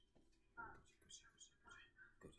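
Very quiet whispered speech, in two short bits about half a second and a second and a half in, barely above room tone.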